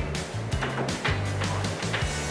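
Background music with a steady bass line and a beat about twice a second.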